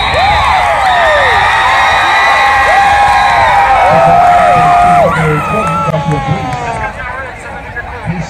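High school football crowd in the stands cheering and screaming, many voices at once, loudest for about five seconds and then dying down.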